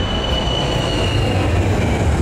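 Jet airliner's engines at takeoff power: a loud, steady roar with a thin high whine that sinks slightly in pitch.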